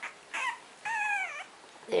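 French Bulldog puppy whining: two high-pitched whimpers, a short one and then a longer one that dips in pitch at its end.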